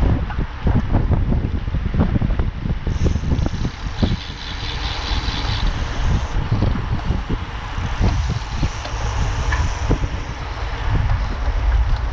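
Wind rushing over the microphone of a camera riding on a moving road bike, a steady low rumble broken by frequent small knocks and rattles from road vibration.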